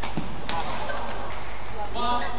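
Badminton racket hitting the shuttlecock during a rally: two sharp hits about half a second apart near the start, over voices in the hall.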